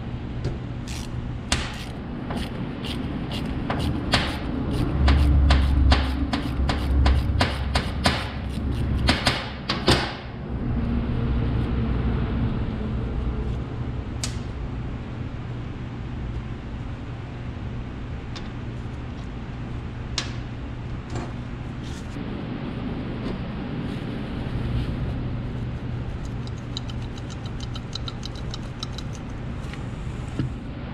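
Socket ratchet clicking as it is worked back and forth to loosen the end nut of a power steering control valve: a run of sharp clicks, about two or three a second, for the first ten seconds, then a steady low hum.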